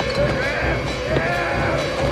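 Horror-film soundtrack: a voice crying out in wavering, arcing pitches over music and dense background noise.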